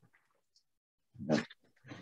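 Near silence, then about a second in one short, loud voiced sound from a person, a brief non-word vocal sound. Speech begins near the end.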